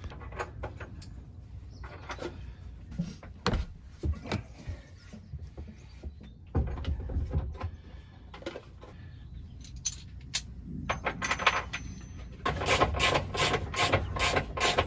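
Scattered knocks and metallic clinks as a washing machine's concrete counterweight block and top are refitted and bolted back down. Near the end comes a quick run of clicks as a bolt is turned with a spanner.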